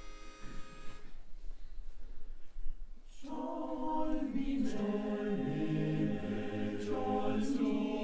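A steady reedy pitch-pipe note gives the starting pitch and ends about a second in. About two seconds later a male choir comes in a cappella, singing held chords in close harmony.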